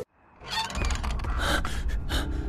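A sudden drop to near silence, then a person's breathy gasps over a low steady drone.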